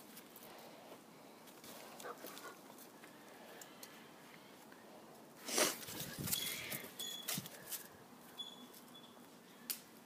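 Quiet outdoor background with a loud burst of rustling handling noise about halfway through as the phone is swung around. After it come scattered small knocks and a few short, high chirps.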